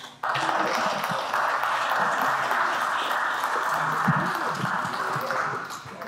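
Audience applauding, starting abruptly just after the music stops and tailing off near the end.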